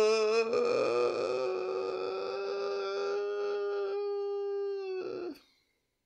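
A man's voice holding one long, high drawn-out note, wavering at first and then steady, which stops suddenly about five seconds in.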